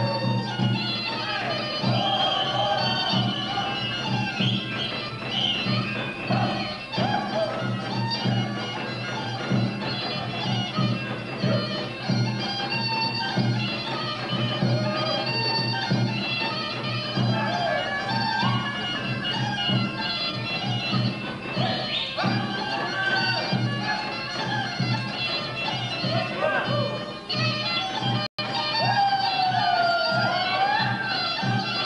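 Bulgarian folk dance music: a wind instrument plays a melody over a steady drone, with a regular dance beat underneath. The sound cuts out for an instant near the end.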